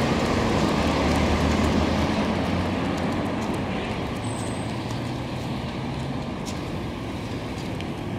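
Street traffic noise: a motor vehicle's engine running nearby over road noise, gradually fading through the second half.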